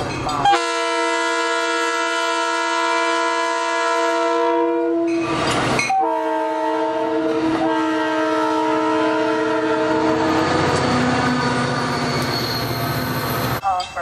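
Horn of an arriving CTrail Hartford Line push-pull train, sounding two long chord blasts of about four seconds each with a short break between them. The rumble and wheel noise of the coaches and diesel locomotive passing follow, then cut off abruptly just before the end.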